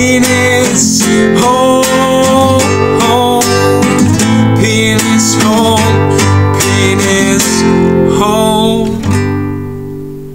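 Acoustic guitar strummed in steady chords, an instrumental break between verses. About nine seconds in the strumming stops and the last chord rings and fades.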